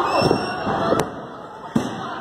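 Two sharp slapping impacts as lucha libre wrestlers grapple in the ring, one about a second in and a smaller one near the end, over shouts from the crowd.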